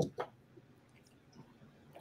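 Two brief clicks in the first quarter second, then a low, quiet room tone.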